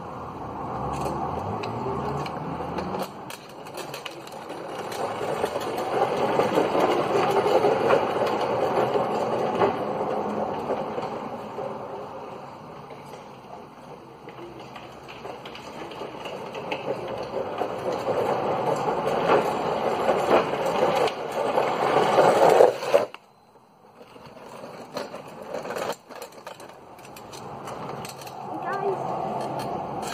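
Drift trike's hard plastic rear wheels rolling and skidding on rough tarmac, a grinding rumble. It grows loud, fades as the trike goes away, builds again as it comes back, then cuts off suddenly.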